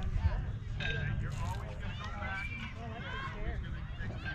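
Indistinct voices of players and spectators calling out across a youth baseball field, over a steady low rumble, with one short sharp click about a second and a half in.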